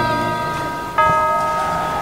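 Background music of bell-like chimes: one chord of bell tones is ringing and fading at the start, and a second is struck about a second in and fades in turn.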